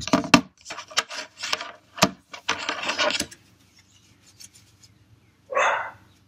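Rubbing and handling sounds as an iPhone and its plastic LifeProof case are wiped clean, with a few sharp clicks. A dog barks once near the end.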